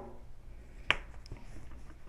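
A single sharp plastic click about a second in, followed by a couple of faint ticks, as the jointed LEGO blade pieces on the spinner are bent and moved in their clip joints.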